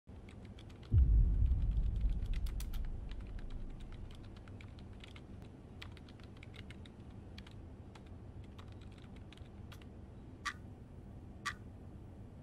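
Typing on a laptop keyboard: quick, irregular key clicks. A deep low boom comes about a second in and fades over a few seconds. Near the end, two sharp ticks a second apart from a ticking clock.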